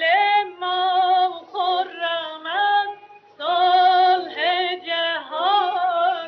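Female voice singing a Persian tasnif with a strong vibrato, in two phrases with a short break about three seconds in. It comes from an early-1940s recording with the high end cut off.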